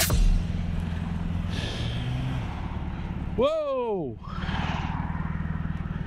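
Honda ST1100 Pan European's V4 engine idling steadily in traffic. About three and a half seconds in, a person's voice gives one loud exclamation that falls in pitch.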